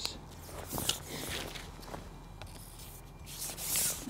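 Faint handling sounds as a pole-cup bait pot is loaded with maggots: small clicks and rustles. Near the end comes a louder rubbing hiss as the carbon fishing pole is pushed out.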